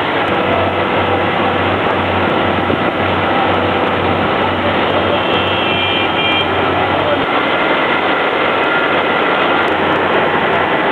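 Fire engine running during firefighting, under a steady loud rush of noise. Its low engine hum pulses about twice a second and fades after about seven seconds.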